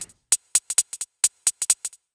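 Arturia Spark drum machine playing only its soloed closed hi-hat: short, crisp ticks in an uneven pattern with quick runs of 16th notes. The kick and the other drum parts are cut out by the solo function.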